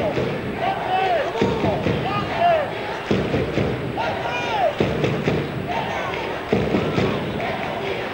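Football crowd in the stands chanting and singing in a repeating rhythm, a new surge about every second and a half, with thumps mixed in.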